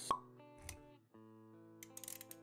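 Logo-intro sound design: a sharp pop sound effect just after the start, a short low thump a little later, then soft held synth-like musical notes.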